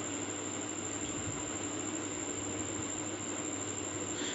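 Steady low background hum with an even hiss, unchanging throughout, with no distinct sound events.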